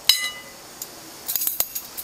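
A metal spoon clinks once against a ceramic bowl and rings briefly, followed about a second and a half in by a few light clicks and rattles.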